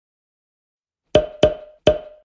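Three short, pitched percussive hits of an intro sound effect, starting about a second in. The first two come close together and the third follows just under half a second later, each one dying away quickly.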